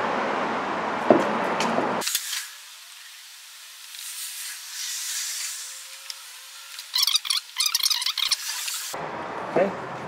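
Hand screwdriver turning screws into a plastic tail-light housing, with rapid small clicks and creaks near the end. A steady background hum drops away suddenly about two seconds in.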